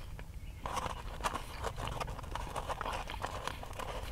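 A person chewing food close to the microphone: a dense run of small mouth clicks that starts about half a second in.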